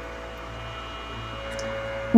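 A pause in speech holding only room tone: a steady low hum with a few faint steady higher tones.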